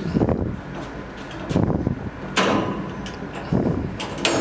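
Stainless steel kennel cage door being handled and opened: metal clanks and rattles, the loudest a sharp clank about two and a half seconds in with a short ringing tail.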